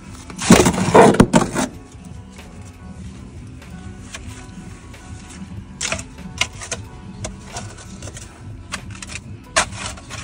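A shovelful of soil is dumped into a plastic wheelbarrow about half a second in: a loud, rough rush lasting about a second. A few short knocks follow later, over steady background music.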